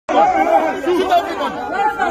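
A group of men shouting over one another, several loud voices at once with no break.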